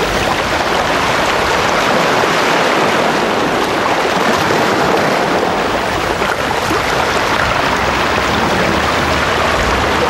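Steady rushing of sea water, waves washing along a shallow beach.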